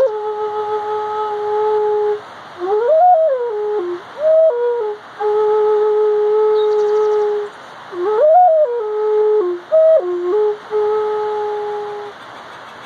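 Flute playing a slow, breathy melody: long held low notes broken by short phrases that climb and fall back, the same rising phrase played twice with brief pauses between phrases.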